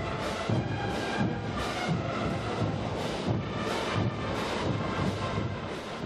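Massed brass band of thousands of players performing, the music carrying a steady beat of about two a second.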